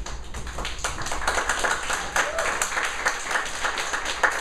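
Hand clapping from a small group of people, many quick irregular claps, with faint voices underneath.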